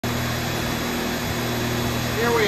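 Driveshaft balancing machine spinning an S10 driveshaft of 2¾-inch tubing with 1310-series U-joints, a steady whirring run with an even low hum.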